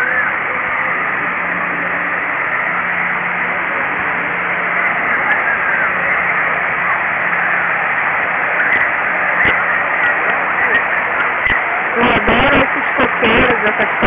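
Steady rushing of water pouring down from splash-pad water curtains, with voices of people playing in the spray faintly over it. A voice speaks near the end.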